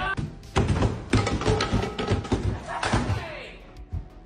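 A quick run of knocks and thuds, thickest in the first three seconds, from a humanoid robot thrashing about a kitchen.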